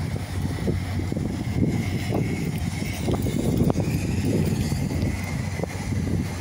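Dodge Charger's engine idling with a steady low hum, under an uneven low rumble of wind on the microphone.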